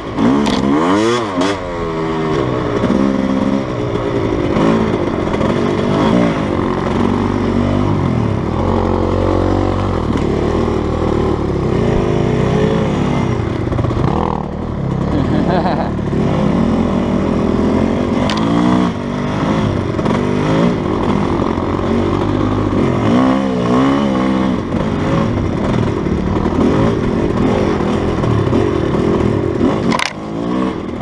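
GasGas dirt bike engine being ridden, revving up and down over and over, its pitch repeatedly rising and falling.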